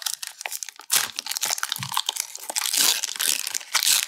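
Foil wrapper of a Pokémon trading card booster pack crinkling and tearing as it is pulled open by hand. It is a dense crackle that gets louder about a second in.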